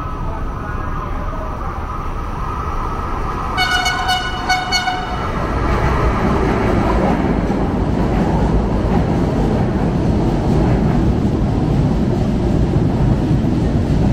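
LRT-1 light rail train arriving at an elevated station. It sounds a few short toots on its horn about four seconds in, then rolls alongside the platform with a loud, steady rumble of wheels on rails.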